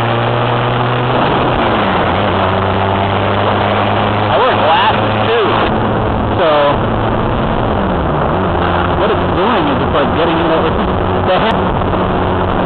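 Honda Rebel 250's parallel-twin engine running while riding, under a steady rush of noise. Its pitch drops a little about a second in and again around eight seconds, as if the throttle is eased.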